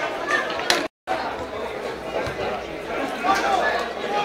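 Spectators at a football ground talking and calling out, several voices overlapping, with a few sharp knocks among them. The sound cuts out completely for a moment about a second in.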